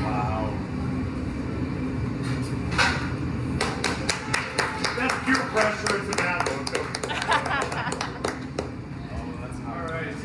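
A small audience clapping, starting about three and a half seconds in and thinning out near the end, with voices murmuring beneath it.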